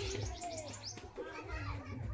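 Voices of women and children talking in the background, with a bird calling.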